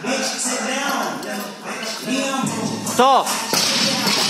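Loud background music with a singing voice playing through the gym's speakers, echoing in a large hall.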